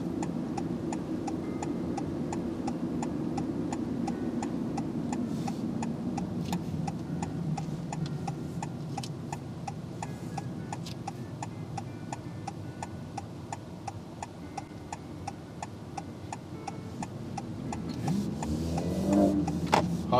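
A car's turn-signal indicator ticking steadily inside the cabin, over the low rumble of tyres on the road.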